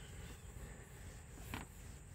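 Faint outdoor background noise: a steady high hiss over a low rumble, with a brief soft rustle about one and a half seconds in.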